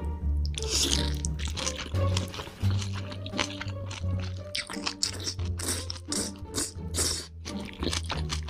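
Person chewing a big mouthful of braised kimchi and pork belly, with many short wet mouth sounds, over background music with a steady low bass line.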